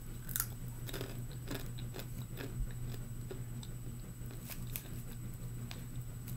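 A person chewing a dry-roasted whole black bean, with irregular crisp crunches.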